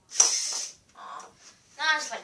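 A LEGO robot's motor-driven arm swinging for a test shot: a sharp clack followed by about half a second of noisy mechanical sound, then a child's voice near the end.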